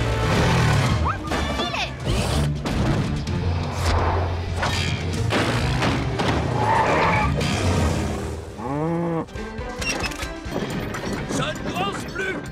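Cartoon action soundtrack: background music over a quad bike's engine and impact thuds as it jumps a gap, with brief vocal exclamations.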